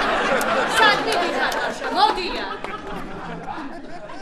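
Overlapping voices: several people talking at once, with a few light clicks in the first second.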